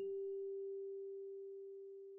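A single electric piano note from the Zenology software synth, previewed as it is placed in the FL Studio piano roll. It is struck once and held, a pure, bell-like tone that fades slowly.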